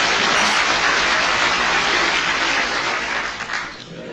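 Audience applauding in a hall, starting suddenly and dying down toward the end.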